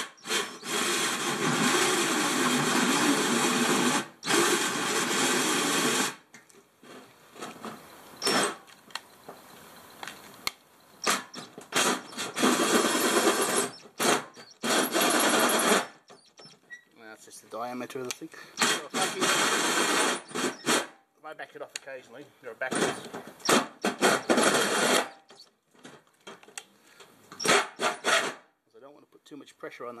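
DeWalt cordless drill driving a 111 mm hole saw into the sheet-steel front guard panel in stop-start bursts. The first run lasts about six seconds, then come shorter runs of one to three seconds with pauses between. The saw is binding hard in the metal.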